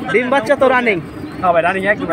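Domestic pigeons cooing among men's voices.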